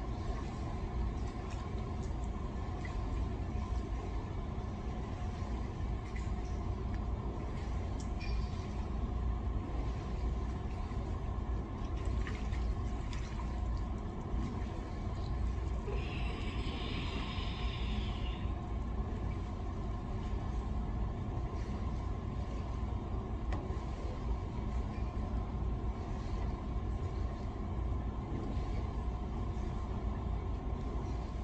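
Steady low rumble of indoor pool-room machinery, with a few constant hum tones on top. About sixteen seconds in, a short splash of water as foam dumbbells are worked at the surface.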